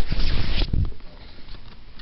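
Handling noise from a camera being moved against fabric: loud rustling and rubbing with a low rumble for the first half second or so, then dying down.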